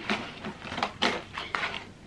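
Cardboard advent calendar door being opened and the item behind it handled: a quick series of light scrapes and taps of card.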